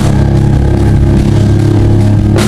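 Live rock band holding a loud, low sustained guitar and bass chord, with one drum hit at the start and no drums for the rest.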